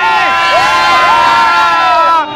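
A group of young people cheering together close to the microphone, several voices holding long shouts at once.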